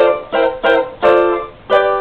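Cavaquinho with solid Brazilian rosewood (jacarandá) back and sides and a German spruce top, strummed in about five short chords, one ringing longer about a second in. The instrument is freshly tuned, and its new strings are slipping slightly back out of tune.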